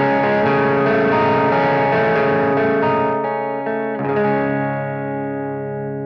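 Electric guitar, a Fender Stratocaster, played clean through the bass-channel input of a Blackface Fender Bassman amplifier: a steady run of notes and chords, then a chord struck about four seconds in that rings and fades away.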